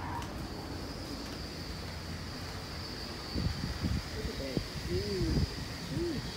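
Steady background hiss with a faint high whine, then from about three seconds in, irregular gusts of wind buffeting the microphone as the doors open onto the open deck of a cruise ship at sea, with faint voices.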